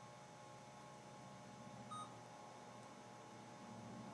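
Near silence: room tone with a steady low hum, broken once about halfway through by a short, faint electronic beep.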